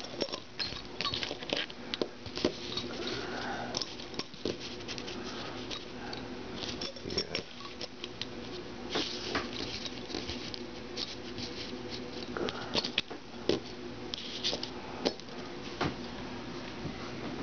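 Handling noise: scattered light clicks, taps and rustles, as of small metal parts and the camera being handled at a workbench, over a faint steady hum.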